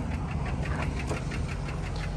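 Chevy Silverado V8 idling steadily, with a fast, even ticking over its low hum.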